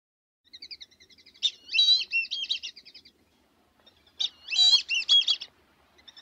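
Bird song in two phrases. The first is led in by a quick run of short chirps and goes into a fast, warbled phrase; a second warbled phrase follows about a second later.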